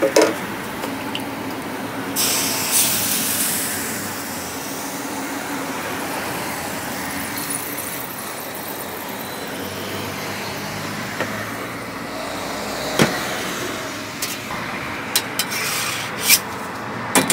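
Steady mechanical running noise as crepe batter is spread with a wooden spreader on a hot crepe griddle. There is a brief hiss about two seconds in and a few light knocks near the end.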